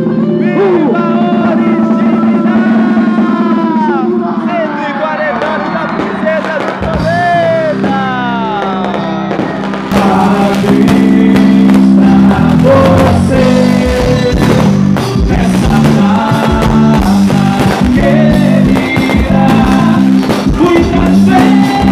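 Live stage music: sung and shouted vocals over a held keyboard chord, then about halfway through the full band comes in loudly with a driving drum beat.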